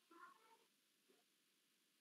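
Near silence, broken near the start by one short, faint vocal cry lasting about half a second.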